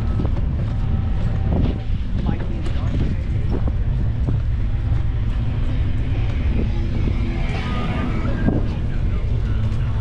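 Steady low rumble of wind buffeting the microphone and tyres rolling on pavement, from a camera on a moving bicycle, with faint voices of passers-by over it.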